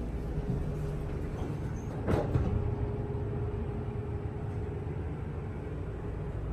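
1984 Dover hydraulic elevator cab with its door sliding shut, a thump about two seconds in, then a steady hum over a low rumble as the car runs.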